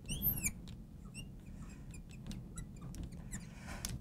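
Marker squeaking and ticking on a glass lightboard as a box is drawn and a word written. There are two rising-and-falling squeaks near the start, then a run of short, fainter squeaks and ticks.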